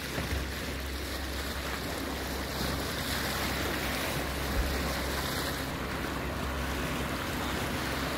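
Steady rush of wind and water on a moving sailing yacht, over the low, even drone of its inboard engine running under way.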